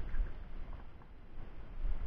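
Quiet workshop room noise with a low rumble and faint handling of small plastic solenoid parts.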